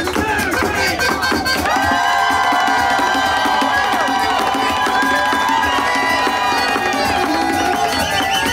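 Irish step dancer's shoes beating rapid steps on a dance board, over music with long held notes. A crowd cheers, most near the start.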